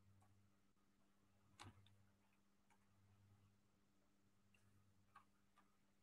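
Near silence: room tone with a faint steady low hum and a few faint clicks, the loudest about a second and a half in.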